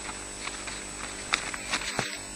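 Ospreys moving on their stick nest: a scatter of sharp cracks and knocks from twigs and branches, loudest about two-thirds through, as one bird raises its wings and takes off. A steady electrical hum and a thin high whine run beneath it.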